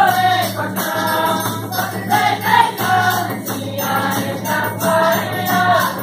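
Folia de Reis troupe singing in chorus, with a hand drum and jingling percussion keeping a steady beat.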